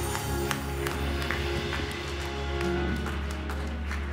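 Church praise music on keyboard and drum kit, ending on a low sustained chord held through the second half.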